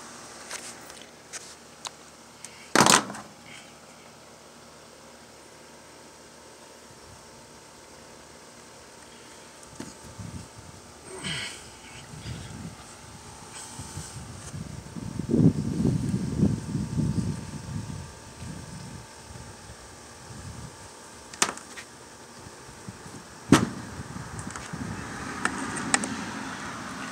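Hands working a new fuel hose into the plastic fuel tank of a small two-stroke pole saw: a few sharp taps or clicks, the loudest about three seconds in, and a stretch of rustling and scraping in the middle.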